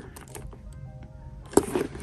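Leather handbag being handled, with one sharp click of its metal hardware about one and a half seconds in.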